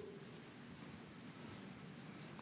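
Felt-tip marker writing Chinese characters on a board: a few short, faint scratchy strokes.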